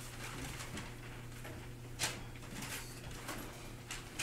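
Classroom room noise as papers are passed in: scattered paper rustles and small knocks, the sharpest about two seconds in, over a steady low electrical hum.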